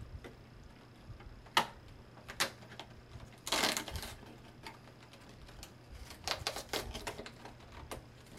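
A small cardboard box being opened by hand: sharp separate clicks and taps, a brief crinkle of packaging about three and a half seconds in, then a quick run of clicks near the end.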